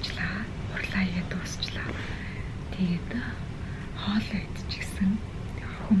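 A woman speaking softly, mostly in a whisper.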